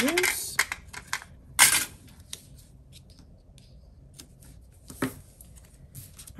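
Handling of paper sticker sheets and planner pages on a desk: scattered light ticks and rustles, with a short louder rustle about a second and a half in and another near five seconds.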